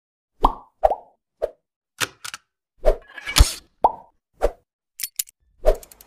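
A string of about a dozen short cartoon-style pop sound effects, irregularly spaced, each a quick plop that dies away at once, with a longer, louder one about halfway through.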